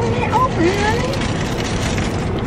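Low, steady rumble of a car's cabin with the engine idling, with voices talking over it in the first second or so.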